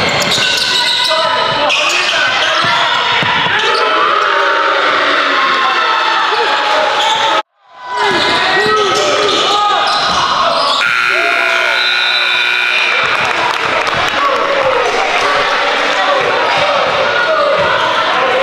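Live indoor basketball game sound: a basketball dribbled on a hardwood gym floor, sneakers squeaking, and players and spectators shouting in the echoing gym. The sound drops out briefly about seven and a half seconds in.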